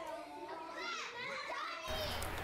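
Several children's voices chattering and calling out at once, high-pitched and lively, from visitors nearby.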